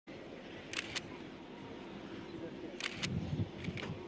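Camera shutters clicking in quick pairs, three times, over steady outdoor background noise, with a brief low rumble about three seconds in.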